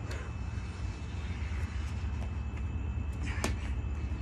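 A person doing burpees on an exercise mat, with one sharp slap about three and a half seconds in, over a steady low rumble and a faint steady high tone.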